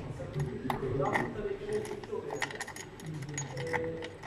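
Small metal interlock key and lock clicking and clinking, several sharp separate clicks: the key is pulled from one bypass breaker's mechanical interlock and put into the other's.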